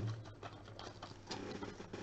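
Faint handling noise of a trading card being set down on a stack of cards: a light patter of small ticks and scrapes.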